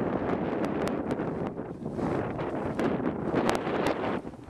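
Wind buffeting the camera microphone in open desert dunes, a steady loud rumble with scattered sharp ticks through it.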